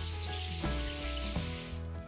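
Background music with steady sustained notes, over a fainter hiss of water spray that fades out near the end.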